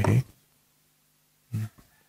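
A man's speech trailing off, a pause of about a second, then a brief vocal sound at the same pitch as his voice.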